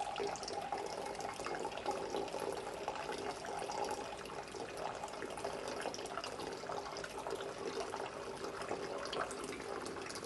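Water running steadily with fine splashing and crackling.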